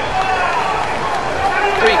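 Mostly speech: a male television commentator talking over the action of a boxing bout, with the arena's background sound beneath.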